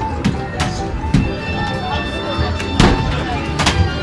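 Basketballs from an arcade hoop-shooting machine thudding against the backboard and hoop, about five impacts, the strongest near three seconds in, over arcade music.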